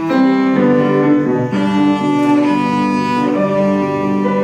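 Cello played with the bow, a melody of held notes changing every half second or so, accompanied by piano.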